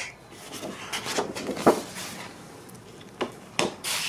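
Sheets of 12x12 patterned scrapbook paper rustling and rubbing against each other as they are handled in a stack, with a few sharp flicks or taps of the paper edges, the sharpest in the second half.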